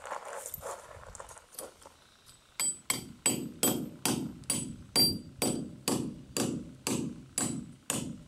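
Hand hammer striking the end of a 3/8-inch stainless steel wedge-anchor stud, driving it into a drilled hole in concrete. The blows start about two and a half seconds in and come steadily at about three a second, each with a short metallic ring.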